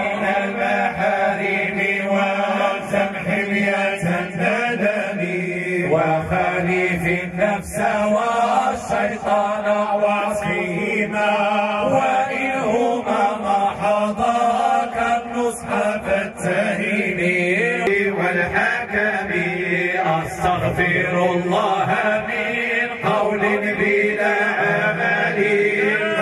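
Men's voices chanting devotional Islamic verses in a continuous melodic chant without instruments, amplified through a microphone and loudspeaker.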